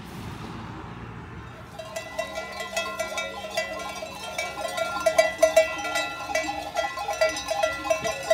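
A soft rushing noise, then from about two seconds in many sheep bells clanking and ringing irregularly and overlapping as a flock moves.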